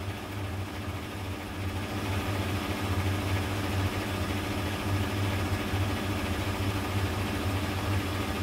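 Petrol-station fuel dispenser pump running steadily as petrol flows through the nozzle into a car's tank, a constant low hum.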